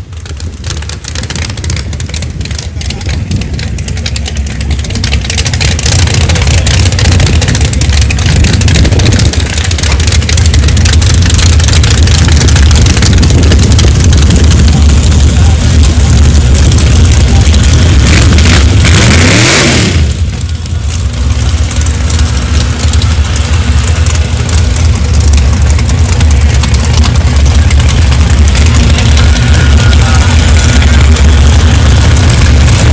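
Mustang-bodied drag car's engine running very loud at the starting line. About two-thirds of the way through it revs up briefly for about a second, then settles back to a steady run.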